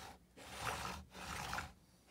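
Plastic tires of a hand-built model car rolling across a wooden table as it is pushed, two passes each under a second.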